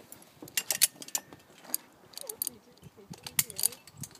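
Metal zipline hardware, carabiners and the trolley on the steel cable, clinking and clicking in a run of sharp irregular clinks as a rider is clipped on.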